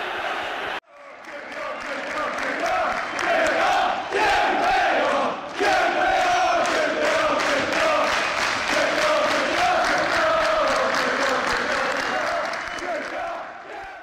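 A crowd of voices chanting together to a steady beat. It cuts in about a second in and fades out near the end.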